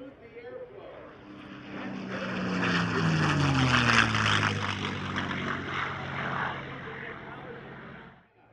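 P-51 Mustang's liquid-cooled V-12 engine and propeller in a low, fast flyby. The engine note builds, is loudest about halfway, and drops in pitch as the fighter passes, then fades away.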